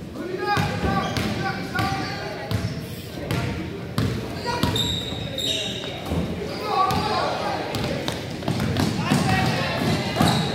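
A basketball being dribbled and bouncing on a hardwood gym floor, with players and spectators calling out, all echoing in a large gym.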